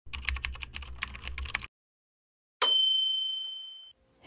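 Typing sound effect for an on-screen text animation: a quick run of key clicks lasting about a second and a half, then a pause and a single bright bell ding that rings and slowly fades.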